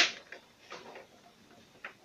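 Cookware being handled on a gas stove: a sharp click right at the start, then a few faint, scattered taps and clicks.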